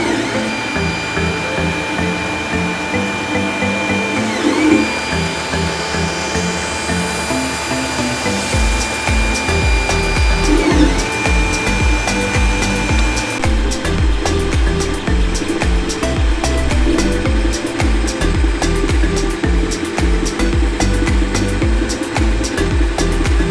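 Creality Ender 3 3D printer's stepper motors whining at a steady high pitch while printing, the whine dipping and coming back a few times, under electronic background music whose beat comes in about a third of the way through.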